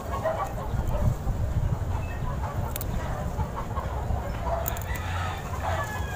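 Faint birds calling in the background over low, irregular rumbling noise, with a few sharp clicks.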